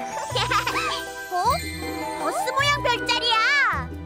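Children's background music: a voice singing a melody over steady bass notes, with tinkling bell sounds.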